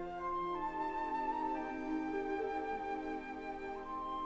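Slow orchestral film score: a flute plays a melody of long held notes over soft sustained lower chords.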